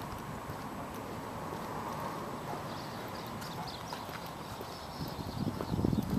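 Footsteps on pavement from a person walking while filming, over a steady outdoor hiss; the steps grow louder near the end.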